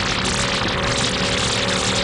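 Electronic intro sting: a dense noisy wash with a held synthesizer chord of several steady tones that begins at the start and sustains throughout.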